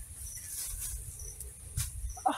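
Outdoor insect chorus: a steady high hiss with short, repeated high chirps, over a low rumble. A single soft click comes near the end.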